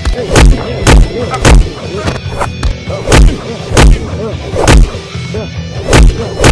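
Film fight-scene punch and hit sound effects: about seven heavy, booming thuds in quick succession, roughly every half second to a second, over dramatic background music.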